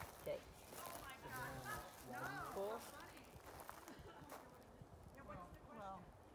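Faint, indistinct talking: several people's voices at a distance, in short phrases with pauses between.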